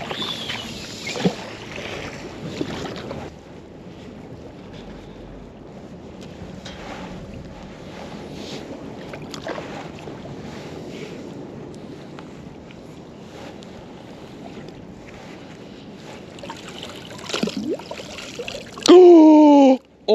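Water lapping at a riverbank with a steady low background haze as a fishing magnet on a rope is thrown out and hauled back in. The first few seconds are a little louder. About a second before the end comes a loud, drawn-out pitched sound that rises and falls like a voice.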